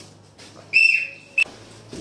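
Plastic referee-style whistle blown in one short, steady, high-pitched blast lasting under a second, cut off sharply, signalling the start of the game round after the countdown.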